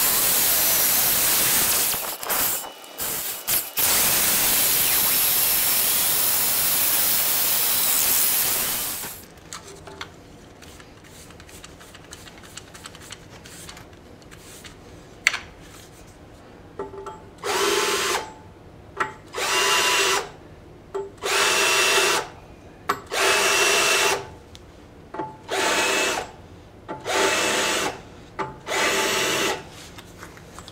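Power drill boring through steel plate, heard sped up eight times as a loud, even hiss for about nine seconds. After a lull, a cordless drill runs in about seven short bursts of roughly a second each, working one drilled hole after another.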